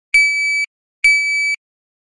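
Shot timer giving two short, steady, high-pitched beeps less than a second apart: the start signal to draw and the par-time beep that ends the drill.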